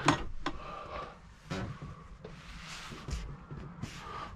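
A few light clicks and rubbing sounds as the switches on a motorhome's wall control panel are handled, with no motor running yet.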